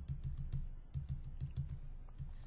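Rapid light taps of a stylus on a drawing tablet, several a second, as rows of dots are dotted in one after another.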